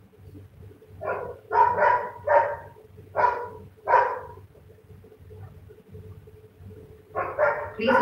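A dog barking about five times in quick succession, from about a second in to about four seconds in, with a faint steady hum underneath.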